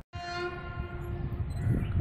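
Indian Railways WAP-7 electric locomotive horn sounding one steady note for a little over a second, then cutting off, over a steady low rumble.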